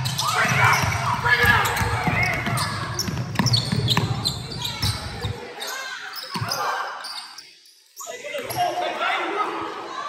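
Basketball bouncing on a hardwood gym floor, with indistinct voices of players and spectators ringing in a large gym.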